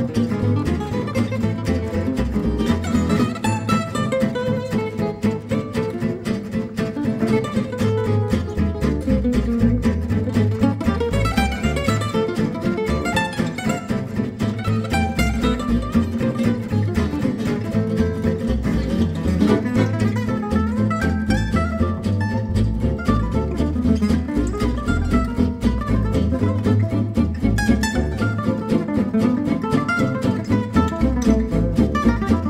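A gypsy jazz band playing live: acoustic guitars keep a steady driving rhythm while quick lead runs are played over it.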